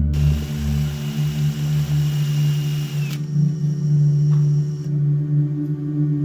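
A power tool's motor running with a steady whine and hiss, then shutting off and winding down about three seconds in. Ambient background music with sustained, singing-bowl-like tones plays throughout.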